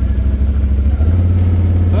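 An engine running close by with a low, steady drone that steps up slightly in pitch about a second in.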